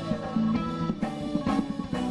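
Live band playing an instrumental passage: electric guitar over a steady drum beat.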